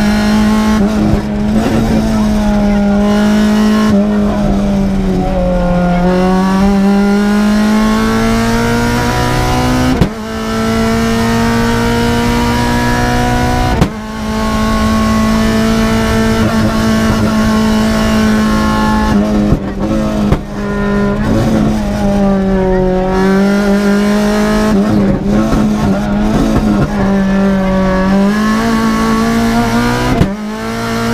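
Renault Clio Williams rally car's 2.0-litre 16-valve four-cylinder engine heard from inside the cockpit, running hard at high revs. There are two brief drops in the middle, at gear changes, and several times the pitch sags and climbs again as the car slows for bends and accelerates out.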